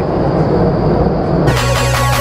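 Steady rushing noise of a vertical wind tunnel's airflow, heard from outside the glass flight chamber. About one and a half seconds in, electronic music cuts in suddenly over it.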